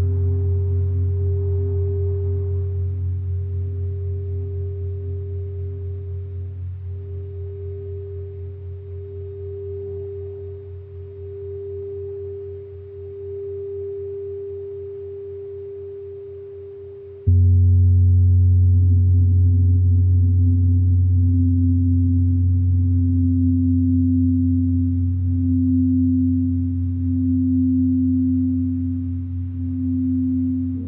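Crystal singing bowls ringing in sustained, overlapping tones with a slow wavering beat, gradually fading. A little past halfway, a louder, lower set of bowl tones cuts in abruptly and holds steady.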